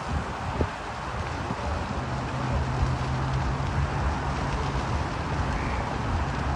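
Wind rumbling on the microphone, with a low steady hum joining about two seconds in.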